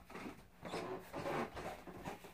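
Irregular rustling and shuffling as things are handled and moved, with a few soft knocks; loudest in the middle.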